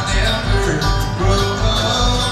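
Live bluegrass band playing an instrumental break on fiddle, banjo, acoustic guitar, mandolin and upright bass, with steady bass notes underneath.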